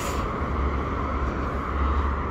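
Steady low rumble of background noise with no distinct events.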